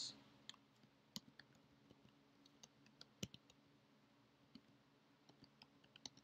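Faint, irregular clicks of computer keys being typed one at a time, about a dozen scattered strokes, over a low steady hum.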